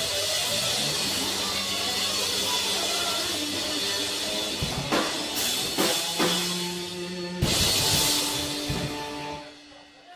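Live rock trio of electric guitar, bass and drum kit playing the end of a song. Steady playing gives way about halfway through to a run of hard accented drum hits over held chords, then a final crash with cymbal wash and a held chord that stops about a second before the end.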